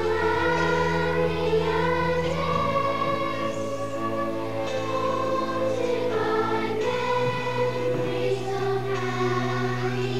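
Children's choir singing a slow, sustained melody over instrumental accompaniment whose low held notes change a few times.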